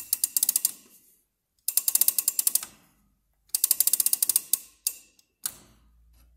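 Key-winding of an 18th-century spring-driven table night clock by Jakob Bentele: the winding ratchet clicks rapidly in three bursts, one for each turn of the key, followed by two single clicks.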